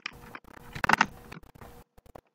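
Choppy video-call audio: faint background noise keeps cutting in and out, with a faint steady hum and one brief louder burst of noise about a second in.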